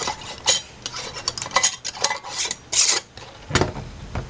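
Metal screw band being twisted down onto a glass canning jar: a few short scraping rasps of the metal threads on the glass, then a low thump near the end.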